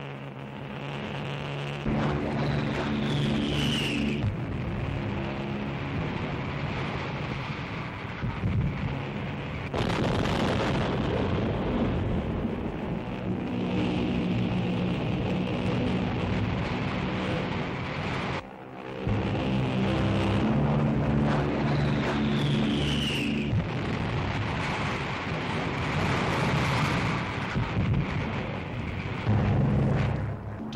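Propeller aircraft engines droning overhead, with a falling whistle twice, about 3 seconds in and again past the middle, over heavy rumbling from bombs exploding.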